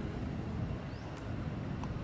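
Outdoor background noise: a low, steady rumble, with a few faint, brief high chirps.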